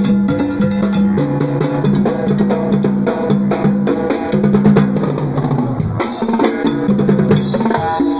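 A brass band playing: sousaphones hold a sustained bass line that steps between notes under the brass, while congas, timbales and snare drum keep up a busy beat. The bass drops out briefly about six seconds in.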